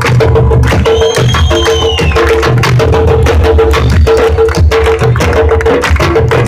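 An ensemble of Uruguayan candombe drums played with hand and stick in a dense, steady rhythm. There are deep drum hits, a repeating mid-pitched drum note and sharp stick clicks. A brief high gliding tone sounds about a second in.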